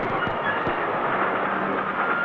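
Express train running at speed, heard as a steady rumble and rush of wheels on the rails with a few light clicks.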